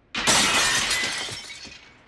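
A glass window pane shattering: a sudden crash just after the start, then breaking and falling glass tinkling and fading away over about a second and a half.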